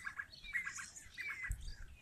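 Birds chirping, with several short high chirps and falling whistles spread across the two seconds. A low rumble comes in about halfway through.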